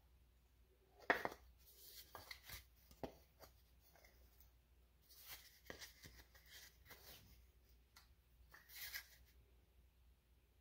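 Faint handling sounds from a small wooden board being turned and held in the hands: scattered light taps and clicks and a few short scrapes, the sharpest a single tap about a second in.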